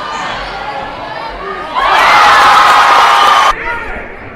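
Basketball gym crowd: a murmur of voices, then about two seconds in a loud cheer that cuts off suddenly about a second and a half later.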